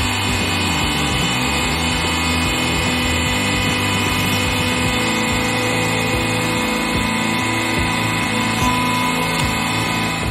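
Hydraulic press pump and motor running with a steady, many-toned hum as the ram is worked on and off a can of silly string.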